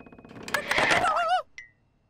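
Cartoon tomato character giving a panicked, wavering yell as it runs off. A rapid ticking patter comes before the yell, and a short high ping follows it.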